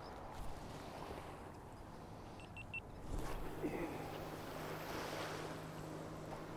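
Outboard motorboat running offshore: a steady low hum that comes in clearer about three seconds in, over wind noise on the microphone.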